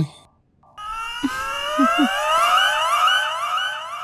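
Comic film sound effect: after a brief silence, a loud, warbling, siren-like tone begins about a second in and keeps rising in pitch, wave after overlapping wave.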